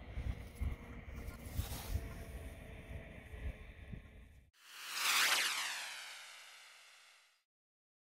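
Wind on the microphone and rustling handling noise outdoors, then an abrupt cut to a swooshing transition sound effect that falls in pitch, peaks about five seconds in and fades away over some two seconds before dead silence.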